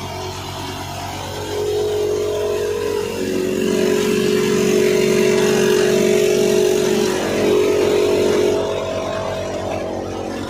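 Soybean thresher running under load, a steady mechanical drone with a held whine over it. It gets louder about a second and a half in and eases back near the end.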